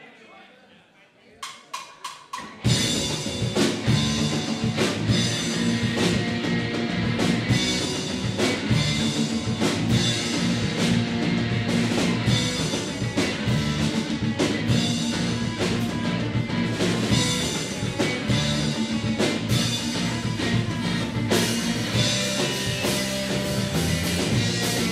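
Four drumstick clicks count in, then a live rock band of electric guitars, bass, drum kit and saxophone starts a fast song together and plays on loudly.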